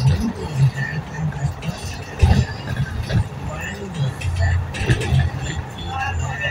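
Road noise inside a moving vehicle at highway speed, a steady low rumble, with indistinct voices talking over it.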